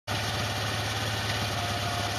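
Saiting Thunder 650 off-road buggy engine idling steadily.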